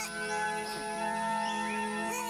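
Soft background music from the episode's soundtrack: a held chord of steady sustained notes, with a stronger note coming in about half a second in.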